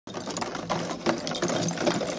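Rapid, irregular mechanical clicking and clattering over a low steady hum.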